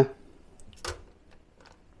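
Soft clicks and a short scrape of a fork moving sausages about in a paper liner in an air fryer drawer, the loudest about a second in, followed by faint scattered ticks.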